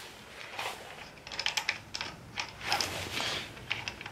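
Clusters of light metal clicks from a socket wrench as a brake caliper mounting bolt is turned in by hand, most of them in the middle and near the end.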